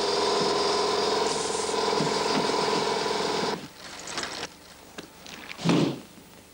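A small motor running with a loud, steady buzz for about three and a half seconds, then cutting off abruptly, followed by a few quieter brief sounds.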